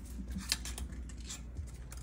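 Kittens' claws lightly scratching and tapping on a hard floor and doormat as they play, with one sharp click about half a second in.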